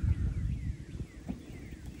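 Longhorn steer rubbing his head against the corner of a side-by-side's bed among loose hay: low, uneven scuffing and rustling, strongest in the first half second.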